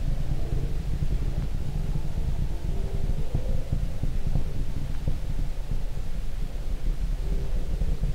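Deep, steady rumble of the Saturn IB's first-stage rocket engines during ascent, with a faint hum above it.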